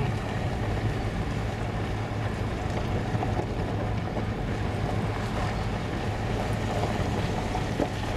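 Interior noise of a car driving on a gravel dirt road: a steady low engine hum with tyre and road rumble.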